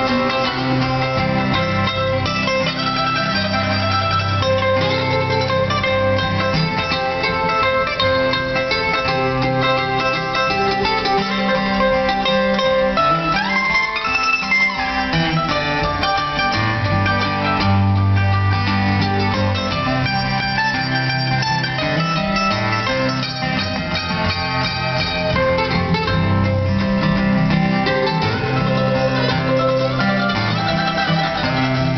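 Live old-time country instrumental on mandolin and acoustic guitar, the mandolin picking over the steadily strummed guitar, with no singing.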